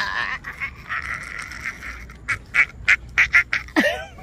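A woman's long, raspy scream of joy, followed by about half a dozen short, sharp cries.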